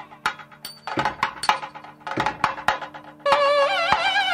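Carnatic nadaswaram and thavil music. For about three seconds the thavil plays a run of sharp strokes over a steady drone while the nadaswaram rests. Then the nadaswaram comes back in with a loud held note.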